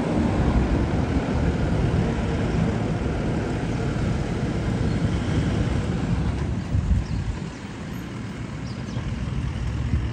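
Toyota off-road 4x4s (FJ Cruiser and Land Cruiser) driving slowly past one after another, a steady low engine and tyre rumble that dips briefly about three-quarters of the way through.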